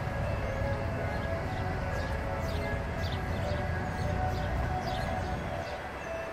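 Outdoor background at an amusement centre: a steady low rumble with faint held musical tones over it and short high chirps scattered throughout.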